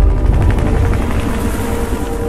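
Helicopter rotor chopping, heavy and low, slowly fading, with a steady held tone underneath.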